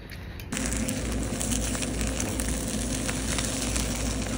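Egg omelette sizzling in a stainless steel frying pan on a cooktop, a dense hiss with many fine crackles, over a steady low kitchen hum. It starts abruptly about half a second in.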